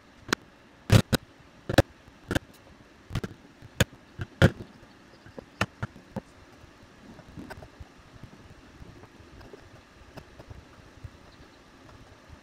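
Mallet strikes on a bevel-edged chisel chopping dovetail waste out of soft maple: about a dozen sharp, irregularly spaced knocks. They thin out after about five seconds, leaving only faint taps and small handling sounds.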